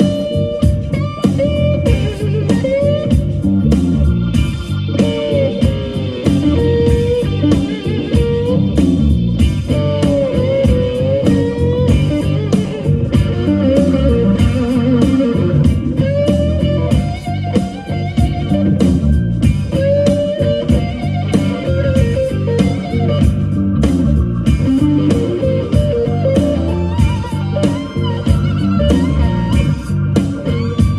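Live slow blues from a band, led by an electric Flying V guitar playing a lead full of bent, sliding notes over bass and drums.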